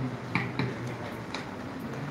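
A few sharp clicks or taps, about four across two seconds, over a low steady room hum.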